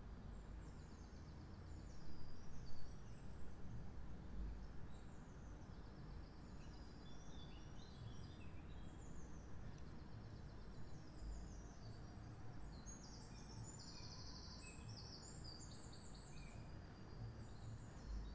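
Birds chirping and trilling in the background, more busily in the second half, over a low steady hum of ambient noise.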